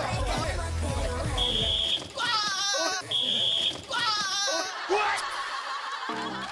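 Upbeat background music cuts off about two seconds in as a game whistle gives two short, steady blasts. Each blast is followed by a burst of excited shrieking and yelling from the players scrambling for chairs.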